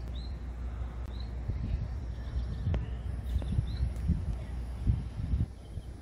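Outdoor ambience: a steady low rumble with a few short, high bird chirps scattered through it.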